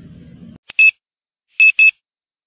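Digital timer alarm going off: a click, then short high-pitched beeps in quick pairs about once a second, signalling that the time is up.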